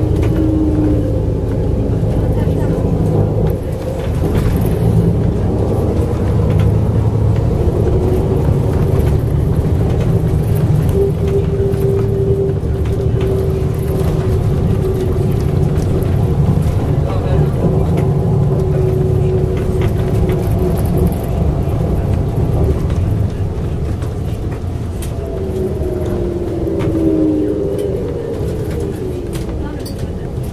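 Tram running, heard from inside: a steady rumble of wheels on rail with a steady whine on top. Near the end the whine falls in pitch and the sound lessens as the tram slows.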